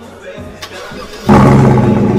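Sierra Denali's V8 with a Borla exhaust starting up: a sudden loud burst about a second and a quarter in that flares, then slowly settles toward idle.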